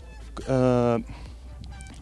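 A man's voice holding a flat, drawn-out 'ehh' hesitation sound for about half a second, between pauses in his speech.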